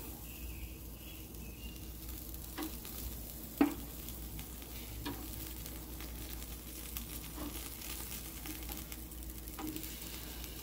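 Bacon-wrapped jalapeno poppers sizzling over hot charcoal, with a few light clicks of metal tongs against the food and grate as the poppers are turned. The sharpest click comes about three and a half seconds in.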